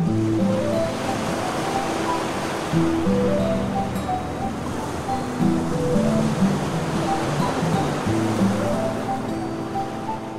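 Instrumental background music, steady melodic notes, over a steady rushing noise.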